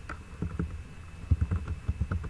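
Computer keyboard being typed on: a quick, uneven run of about eight dull keystrokes.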